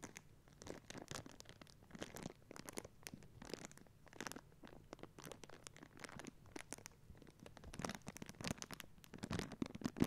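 A small clear plastic bag being crinkled by hand: a faint, irregular run of crackles and rustles.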